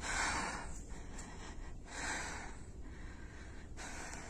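A person breathing heavily close to the microphone: two breaths about two seconds apart, over a low steady rumble.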